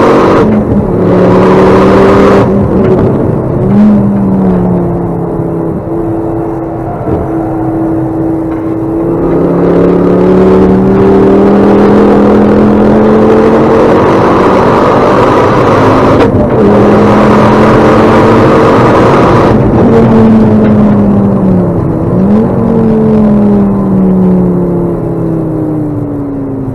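Ford Focus ST track car engine heard loud from inside the cabin under hard acceleration. Its note climbs and then drops sharply several times as it shifts gear or lifts, and falls away near the end as the car slows.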